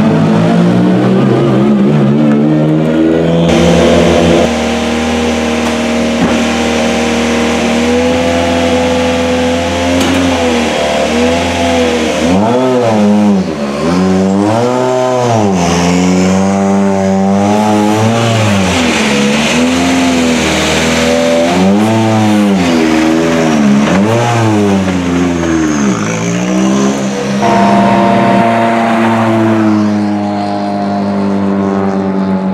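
Turbocharged four-cylinder World Rally Car engines: first a steady idle, then a parked Citroën DS3 WRC revved about ten times in a row, the pitch rising and falling with each blip, then another car idling.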